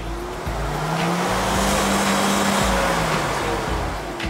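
A vehicle's engine revving hard with its wheels spinning in mud as it is driven out of a stuck spot: the revs climb from about a second in, hold high, then ease off near the end, over a steady hiss of spinning tyres.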